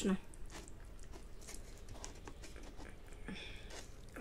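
Faint clicks and scrapes of a plastic fork and knife cutting into a piece of smoked shark meat on a paper plate.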